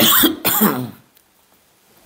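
A man coughing twice in quick succession, both coughs in the first second.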